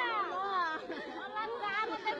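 Several women's voices speaking and crying out over one another, high-pitched and wavering.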